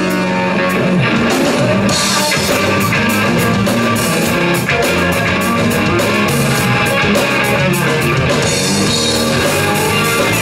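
Live blues-rock band playing an instrumental passage: a Les Paul-style electric guitar over a drum kit, with steady cymbal hits, and no singing.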